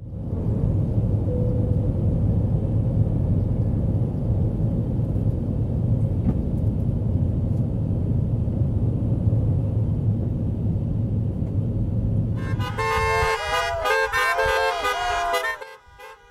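Steady low rumble of jet airliner cabin noise heard from a window seat. About twelve seconds in it gives way to several car horns honking at once at different pitches, some bending up and down.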